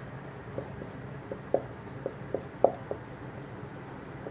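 Marker writing on a whiteboard: a run of short, light strokes and taps from about half a second in to about three seconds in.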